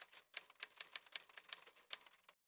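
Typing sound effect: a quick, even run of key clicks, about eight a second.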